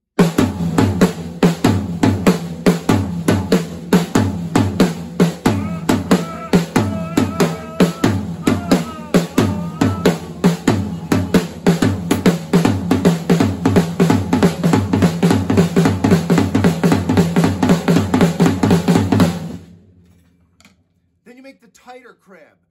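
Drum kit played in a fast, rolling groove, the "crab" pattern, with snare, tom and bass drum strokes in an even stream. It stops abruptly a couple of seconds before the end.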